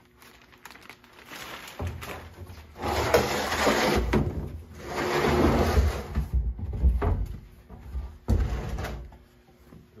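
A plastic dust-collector barrel being slid across the floor and pushed back into place under the cyclone lid: spells of scraping and rumbling, with a few knocks as it is moved and seated.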